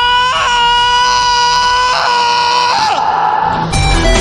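A long, high held vocal cry, steady in pitch with two brief breaks, that falls away about three seconds in. Music with a heavy beat starts near the end.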